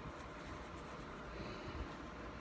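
Faint rubbing of a makeup cloth against skin as colour swatches are wiped off, with a couple of light knocks.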